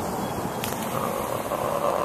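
A car passing on the street: a steady hum of tyres and engine that grows a little in the second half.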